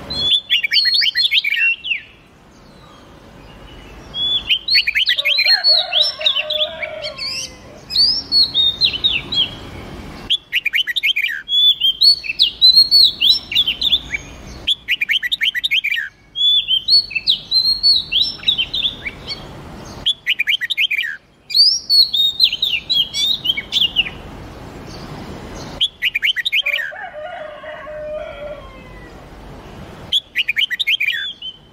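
Recorded songs of a red-whiskered bulbul and an oriental magpie-robin: quick, bright warbled phrases of chirps and whistles, each a few seconds long, repeated one after another and cutting in and out abruptly, as in a looped bird-training track.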